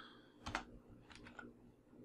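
Faint, sparse keystrokes on a computer keyboard: a handful of separate clicks while code is being typed.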